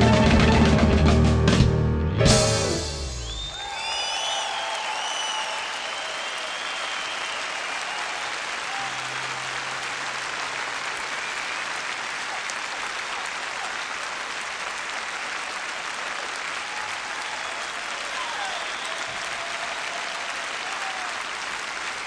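A jazz-fusion band's closing chord, cut off with a final drum hit about two seconds in, followed by steady audience applause with a few shrill whistles just after the ending.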